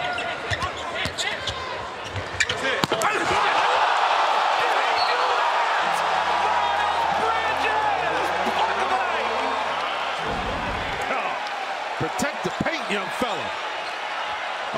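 Basketball arena game sound: a basketball bouncing on the hardwood, then crowd noise that swells about three seconds in and stays loud, slowly easing toward the end.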